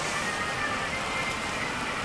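Car moving slowly, a steady hum of engine and road noise heard from inside the cabin.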